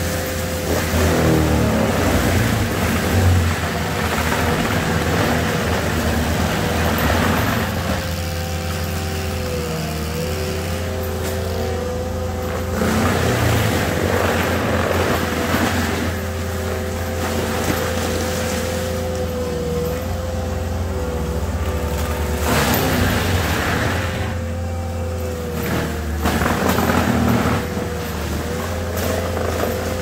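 ASV RT-120 compact track loader running a Fecon Bullhog forestry mulcher: the diesel engine and spinning mulcher drum drone steadily. Several times the sound swells into a rougher grinding as the drum chews into brush and vines.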